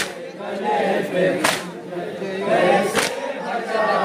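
Crowd of men chanting a nauha, a Shia mourning lament, in unison. About every second and a half comes a sharp collective slap of hands striking chests (matam) in time with the chant.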